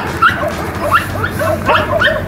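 A dog excited in play, giving quick short yips and whines, several a second, many rising in pitch.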